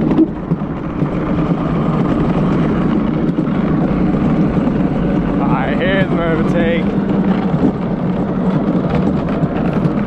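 Gravity luge cart running downhill on a concrete track: a steady rolling noise from its wheels. About six seconds in, a person's voice wavers briefly for about a second.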